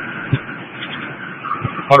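Police radio transmission with the officer's mic keyed open, carrying a steady rush of road and engine noise from a squad car in a pursuit at about 100 mph, heard through the radio's narrow, tinny channel; the officer starts speaking at the very end.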